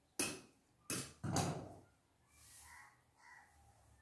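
Scissors cutting through cotton cloth: three sharp snips in the first second and a half, the last one longer. After them come only faint, softer sounds.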